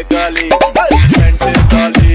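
DJ bass remix of a Hindi Holi song: a sung vocal line, then about a second in a heavy electronic bass beat drops in, each deep kick sweeping down in pitch.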